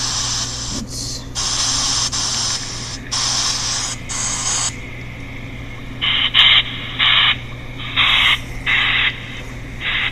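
Chopped pink noise from a paranormal-research app, bursts of hiss broken by short gaps, stops about five seconds in. From about six seconds, an RCA digital voice recorder plays back the recorded bursts of hiss through its small speaker, duller and with the top cut off, under a steady low hum.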